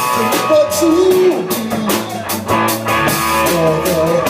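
Live rock band playing: electric guitar and drum kit, with a steady beat of cymbal and drum strokes about four a second under bending melody notes.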